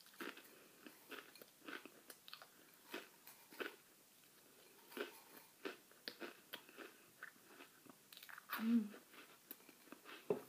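Crackers being crunched and chewed with a full mouth, in short irregular crunches all through, with a closed-mouth 'mm' hum near the end.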